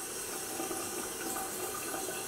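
Water running steadily from a tap.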